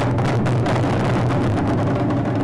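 Japanese taiko drums beaten in a fast roll, the strikes running together into a steady rumble.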